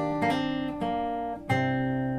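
Bedell acoustic guitar with a capo, fingerpicked: a few single melody notes ring over each other, then a fuller chord is plucked about one and a half seconds in and left ringing.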